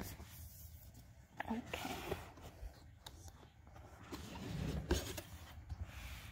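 Cardboard box being handled and its lid opened: faint scraping and rustling of cardboard with a few light knocks.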